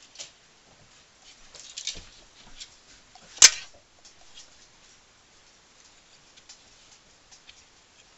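Plastic clothes hangers and clothing being handled: light rustling and small clicks, with one sharp clack about three and a half seconds in.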